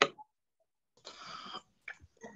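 A person's cough over a video-call microphone: a sharp burst right at the start, then about a second later a half-second breathy sound.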